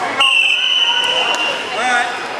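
A single long, steady, high-pitched signal tone, about a second and a half, marking the end of a wrestling period.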